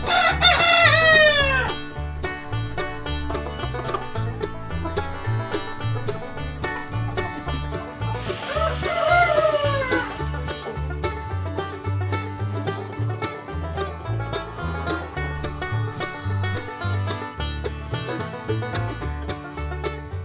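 Young black Leghorn roosters crowing, two crows each under two seconds, one right at the start and another about eight seconds in. Behind them runs banjo-style country music with a steady bass beat.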